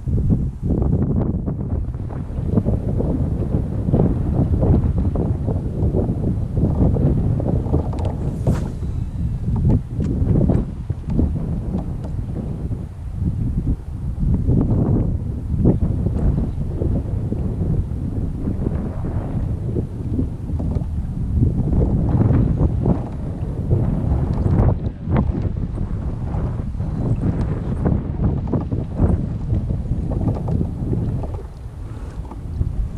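Wind buffeting the action camera's microphone on open water: a loud, low rumble that swells and drops in irregular gusts.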